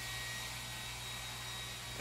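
Steady background hiss with a faint low hum and no distinct event: room tone.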